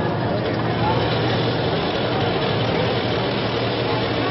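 Steady street noise: traffic running, mixed with indistinct voices.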